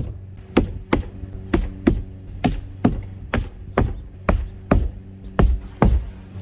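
Hammer driving roofing nails through rolled asphalt roofing into the roof deck, about thirteen blows at roughly two a second. A steady low hum runs underneath.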